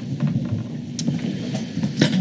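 Low rumbling handling noise on a table microphone, with small knocks and a sharp click about a second in, as one presenter leaves the table and the next settles in.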